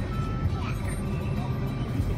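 Steady low rumble of slow city traffic, car and motorbike engines idling and creeping in a jam, heard from inside a car, with music and voices mixed over it.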